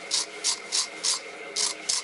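A hand wire brush scrubbing the threaded stem of a cylinder-block coolant drain cock, in quick rasping strokes about three a second. It is cleaning burrs off the thread before sealant is applied.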